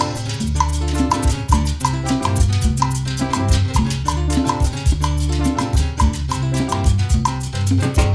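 Guaracha band playing live: an instrumental passage with a quick, steady drum and percussion beat over deep low notes.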